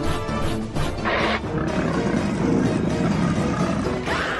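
A cartoon monster's roar sound effect starting about a second in and carrying on over dramatic background music.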